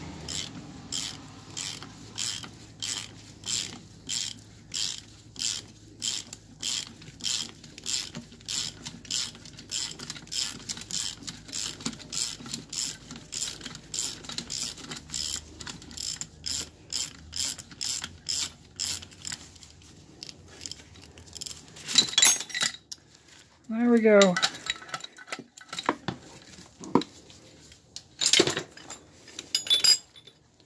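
Ratchet wrench clicking steadily, about two clicks a second, as it turns a gear puller's screw to press a drilled-out suspension bushing out of its control arm. Near the end there are a few louder metal clanks and a short falling creak.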